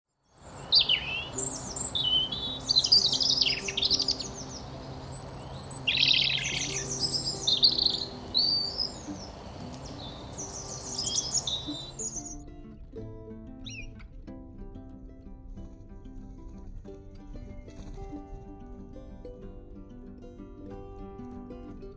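European robin singing: a run of high, thin warbling phrases with short pauses, over soft background music. The birdsong stops about twelve seconds in, leaving only the music.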